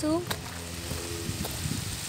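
A boy's voice finishing a short word at the start, then a steady outdoor hiss with a few light clicks and a faint voice in the background.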